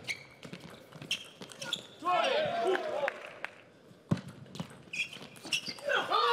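Table tennis ball knocking off the bats and the table in a rally, a string of sharp clicks a fraction of a second to a second apart. A voice cuts in for about a second, around two seconds in.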